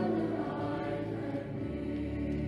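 Mixed school choir singing sustained chords, with a lower bass note coming in near the end.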